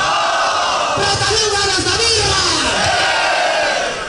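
Large crowd of trail runners shouting and cheering together, many voices held at once.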